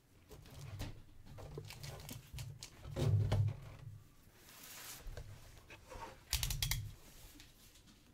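A cardboard box of 2013 Panini Elite basketball cards being handled and opened by hand on a desk: irregular rustling and scraping of cardboard, a louder knock a few seconds in, and a short run of sharp crackles later on as the box is pulled open.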